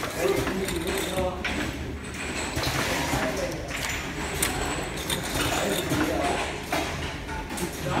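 Indistinct voices of several people talking, with scattered short clicks and rustling of plastic bags of syringes being handled.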